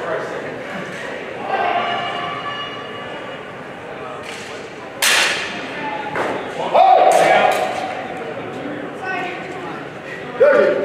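Steel longswords striking each other. There is one sharp, ringing clash about halfway through, then a few more strikes a second or two later, echoing in a large hall.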